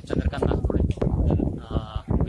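A man talking in Marathi close to the microphone, with a drawn-out, wavering sound near the end.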